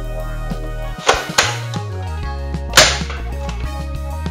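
Background music, with three sharp snaps over it, about a second in, just after, and near three seconds: shots from a spring-powered toy foam-dart blaster.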